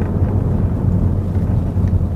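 Steady low rumble of road and engine noise inside the cabin of a moving Chevrolet Malibu 2.0 Turbo.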